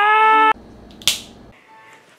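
A boy's long, held yell of 'Ah!' at one steady pitch, cut off suddenly about half a second in. It is followed by a low rumble and a short sharp noise about a second in.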